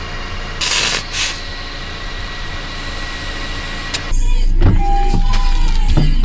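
Air compressor running steadily as a car tyre is filled through a hose held on the valve, with short hisses of air about a second in. About four seconds in the sound changes abruptly to a louder low rumble.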